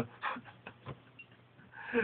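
Faint breathing and small mouth clicks from a man pausing mid-sentence, with a short breathy sound near the end just before he speaks again.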